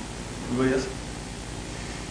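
Steady hiss of lecture-hall room tone, with one short burst of a person's voice about half a second in.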